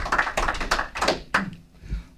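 Scattered applause from a small audience: irregular hand claps that thin out and stop about a second and a half in.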